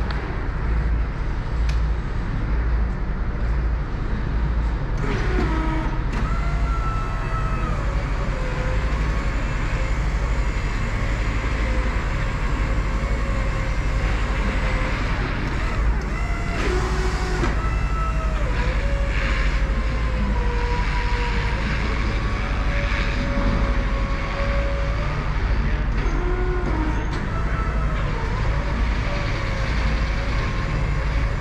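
Skyjack SJIII-6832 electric scissor lift being driven, with a steady low hum and, from about five seconds in, a motor whine that shifts up and down in pitch as it speeds up, slows and turns.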